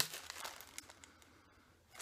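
Faint crinkling and rustling of a pipe-tobacco sample packet being handled and opened, mostly in the first second, then dying away.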